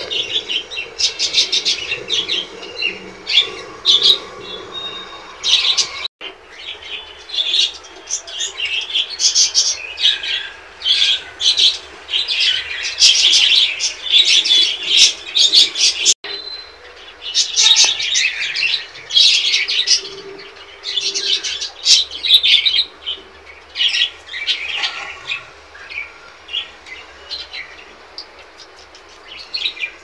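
Pet birds chirping and calling in quick, busy bursts. The sound drops out for an instant twice.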